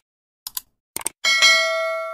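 Sound effects of an animated subscribe button: a few short clicks about half a second apart, then a bright bell-like ding a little over a second in that rings on and slowly fades.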